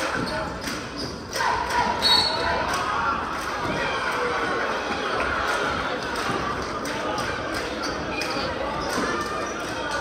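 Basketball being dribbled on a hardwood gym floor during live play, scattered knocks that echo in the hall over a steady murmur of crowd voices.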